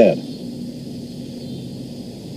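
A man's voice ends a line at the very start, then a pause holding only a faint, steady low hum and hiss.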